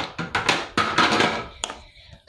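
A quick run of knocks, taps and rubbing from handling close to the phone's microphone.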